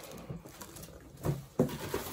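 Clear plastic bag around a studio monitor crinkling as the speaker is handled and set down, with a brief louder handling noise a little over a second in.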